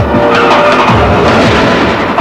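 A car skidding: a loud, noisy rush of tyre sound that starts abruptly and thins out over about two seconds, laid over a music track with a beat.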